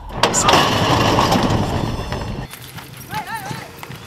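A horse-racing starting gate's front doors clang open and horses break out onto the dirt track: a sudden loud burst of metal banging and hoofbeats that dies away over about two seconds. A brief high shout follows near the end.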